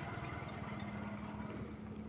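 Motorcycle engine running steadily while riding on a dirt road: a low, even hum with road and wind noise.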